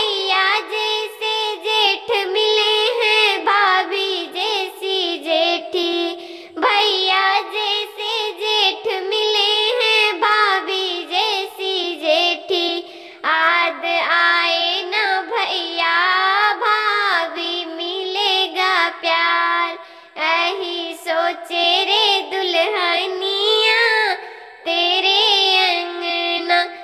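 A high, pitch-shifted cartoon-cat voice in the style of Talking Tom singing a Hindi wedding song in continuous phrases, with wavering held notes and short breaths between lines.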